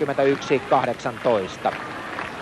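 A man speaking Finnish: TV sports commentary, heard over a steady background haze.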